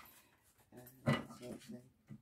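Speech only: a woman saying a word or two, with a quiet pause before it.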